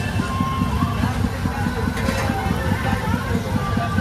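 Gas burner under a kadai burning steadily with a low rumble, with voices faintly in the background.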